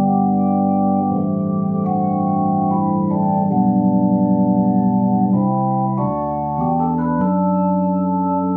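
Roland FP-30X digital piano's organ voice playing held chords, changing every one to three seconds. The chord held in the middle has a fast pulsing wobble.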